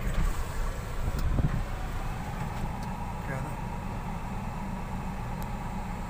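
Low, steady rumble of a car running, heard from inside the cabin.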